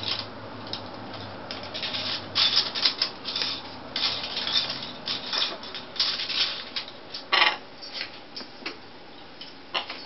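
Macaw beaks scraping and rubbing plastic bracelets against a PVC play-stand post, in a run of short, irregular scrapes.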